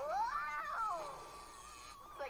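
A cartoon-style wailing cry that rises and then falls in pitch over about a second, then trails into a thin, wavering held tone.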